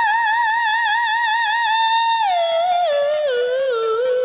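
A woman's singing voice holding a high note with vibrato for about two seconds, then stepping down the scale in a descending run, over strummed acoustic guitar.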